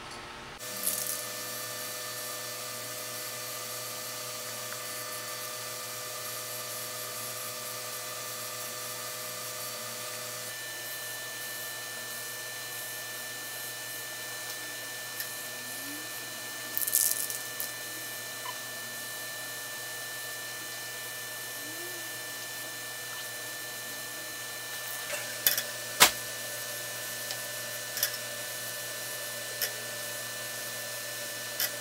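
A steady hum made of several held tones, its pitch make-up shifting about ten seconds in. A short hiss comes about halfway, and a few sharp clicks or knocks come near the end.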